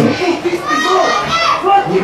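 Several voices shouting excitedly across the pitch, as players celebrate a goal.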